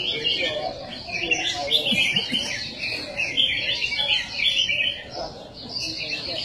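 Several caged red-whiskered bulbuls singing at once, a dense, unbroken run of chirping phrases, over a low murmur of voices.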